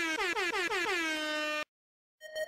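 Hip-hop DJ air-horn sound effect: a rapid string of about six short blasts sliding down in pitch, settling into one held blast that cuts off suddenly.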